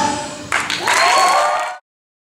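The last sung notes of a stage number fade out, then a theatre audience breaks into applause and cheering about half a second in; the sound cuts off abruptly near the end.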